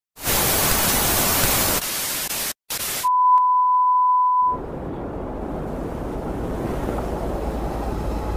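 TV static sound effect: loud white-noise hiss for about three seconds, cutting out briefly near the middle. It gives way to a steady test-tone beep held for about a second and a half, then a low rumble that slowly grows louder.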